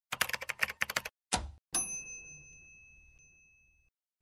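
Intro sound effect: a quick run of typewriter-like key clicks, a low thump, then a bright bell-like ding that rings out for about two seconds.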